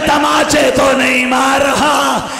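A man's voice over a microphone chanting a mournful recitation in long held notes, with the pitch falling away at the end of each phrase.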